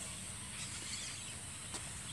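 Faint, steady outdoor background hiss, with a small click near the end.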